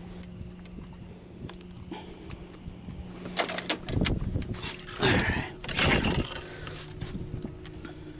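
Handling noise as a redfish is worked out of a landing net and laid on a fiberglass boat deck: scattered clicks, bumps and net rustling, with two louder bouts of knocking and slapping, about three and a half and five seconds in.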